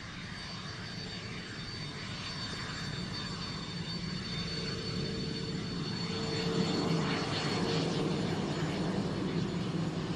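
Jet engines of a Northrop F-5E Tiger II running at low power during the landing roll-out: a steady rumble with a thin high whine. The sound grows gradually louder, and a lower steady tone joins about halfway through.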